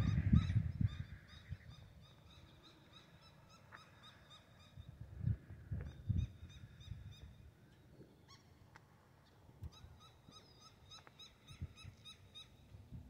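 Quiet outdoor ambience with faint, repeated bird calls, and a few low thumps from the camera being handled, the strongest at the start.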